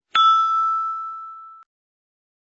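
A single bell-like ding sound effect: struck once, ringing on one clear tone that fades for about a second and a half, then cuts off.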